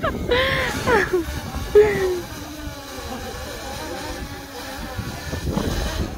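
Small quadcopter drone hovering close overhead, its propellers buzzing with a wavering pitch over wind on the microphone. A short cry rises and falls in the first second.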